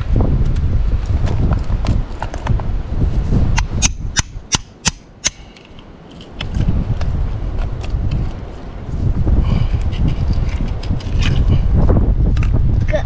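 Steel oyster hammer knocking against oyster shells: a quick run of about six sharp taps a few seconds in, over a steady low rumble of wind on the microphone.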